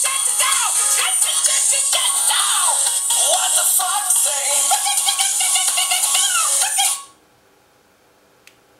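Electronic dance-pop song with sung 'chacha-chacha-chow' fox-call syllables playing through a smartphone's small built-in loudspeaker, thin with no bass. It cuts off suddenly about seven seconds in.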